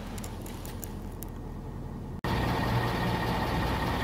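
Steady low hum of an idling pickup, heard from inside the cab. The source is most likely the 2020 Ford F-250's 6.7-litre V8 diesel. About halfway through, an edit cuts suddenly to a louder hum with a faint high steady whine over it.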